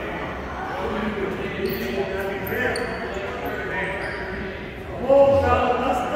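Many boys' voices chattering and calling in a large, echoing gymnasium, with short squeaks of sneakers on the hardwood floor. About five seconds in, one voice rises to a loud shout of "Oh, let's go!"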